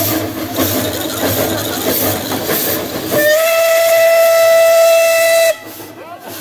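Narrow-gauge steam locomotive hissing steam as it passes, then its steam whistle blows one steady note for a little over two seconds, about halfway through, and cuts off abruptly.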